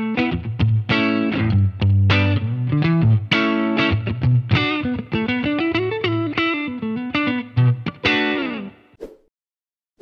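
Suhr Strat-style electric guitar through an amplifier, playing a melodic phrase of picked notes over a low bass note fretted with the thumb wrapped over the neck. The low note rings under the moving higher notes, and the phrase stops about nine seconds in.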